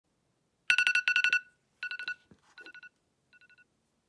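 Smartphone alarm going off: groups of rapid electronic beeps on one high pitch, each group fading quieter than the last.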